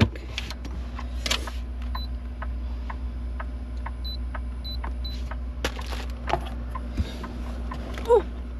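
Short, high electronic beeps from a Bodega portable fridge's control panel as its buttons are pressed, over a steady low hum in the truck cab. A few handling clicks follow near the end.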